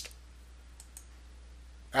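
Two faint computer mouse clicks close together, about a second in, over a low steady electrical hum.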